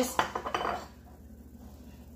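A quick run of light clicks and clinks of small hard objects in the first second, then quiet room tone with a low hum.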